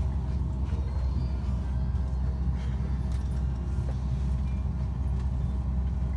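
Steady low rumble inside an airliner cabin, with a few faint clicks of the phone being handled.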